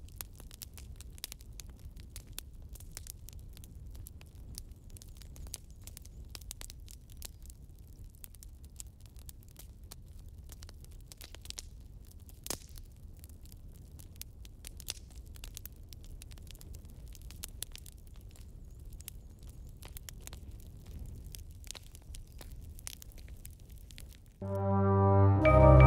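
Faint steady crackling: a dense run of small clicks and pops over a low rumble, with one louder pop about halfway through.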